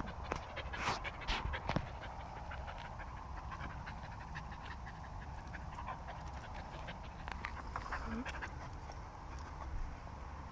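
Small dog panting close by. A few sharp clicks and knocks come in the first two seconds.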